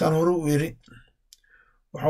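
A woman speaking briefly, then a pause broken by a single faint click.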